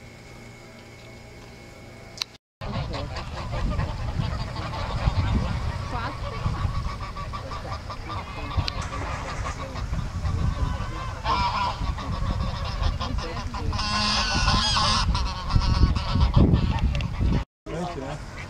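A flock of domestic geese honking on the water, with many overlapping calls that start a couple of seconds in and are loudest about fourteen seconds in.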